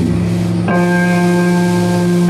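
Heavily distorted electric guitars and bass holding slow, sustained ringing chords in a live doom metal performance, changing to a new chord about two-thirds of a second in and letting it ring out.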